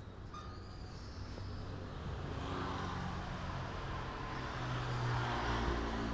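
Road traffic passing: a motor vehicle's engine hum swelling and loudest near the end.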